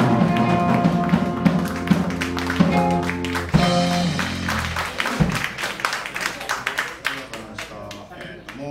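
A small jazz band of saxophone, electric bass, drums, guitar and piano plays the closing bars of a tune and holds a final chord that cuts off around four to five seconds in. Scattered clapping from a small audience follows and thins out.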